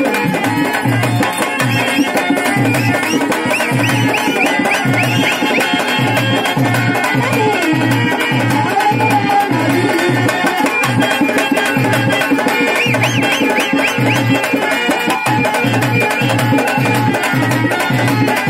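Live folk music for a stage dance: a two-headed hand drum and a clay pot drum keep a steady beat of about two strokes a second, under a sustained melody with quick high ornamental runs.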